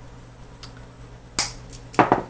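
Wire cutters snipping through thin craft wire: one sharp snap about one and a half seconds in, with a few faint clicks around it.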